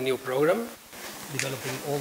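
Speech only: a voice holding drawn-out, wordless hesitation sounds, with a short pause about a second in.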